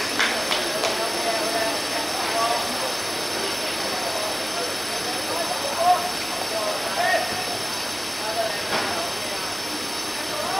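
Distant, scattered shouts and calls of footballers on an open pitch over a steady hiss, with one louder call about six seconds in.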